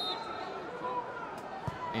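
Football match crowd ambience: scattered distant shouts and voices over a low, steady murmur in a sparsely filled stadium.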